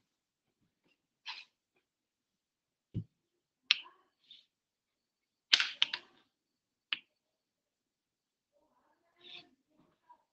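A handful of short, isolated clicks and small noises separated by silence, with a low thump about three seconds in and the loudest cluster a little past halfway.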